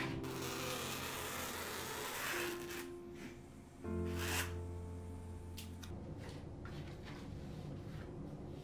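A pin scraping across muslin fabric as it is traced along the weave to find the grain line: a drawn-out scratch for the first couple of seconds, then a few short scratches. Soft background music with held chords plays underneath.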